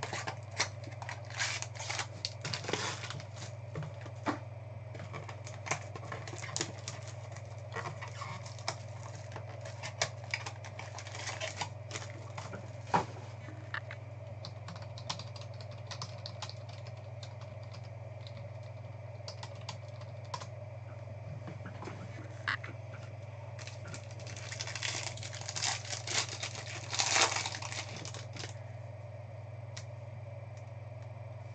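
Trading cards and their packaging handled on a tabletop: scattered sharp clicks and taps, then a burst of wrapper crinkling near the end, over a steady low electrical hum.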